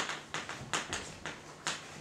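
Chalk writing on a blackboard: a quick, irregular series of sharp taps, several a second.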